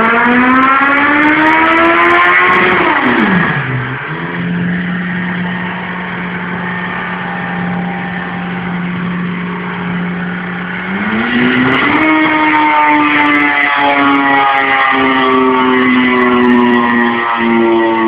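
Suzuki B-King's 1340 cc inline-four, fitted with a Yoshimura slip-on exhaust, running under load on a dyno. Its pitch climbs, drops sharply about three seconds in, holds steady and quieter for several seconds, then rises again at about eleven seconds and holds at a higher, louder note that sags slightly near the end.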